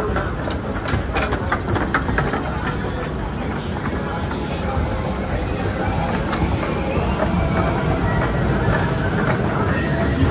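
A log flume boat climbing the lift: the lift mechanism runs with a steady rumble and rattle, broken by scattered sharp clicks. Indistinct rider voices are mixed in.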